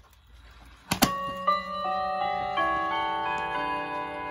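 A sharp click about a second in, then a key-wound tambour mantel clock's chime rods ring a melody, note after note, each note ringing on under the next.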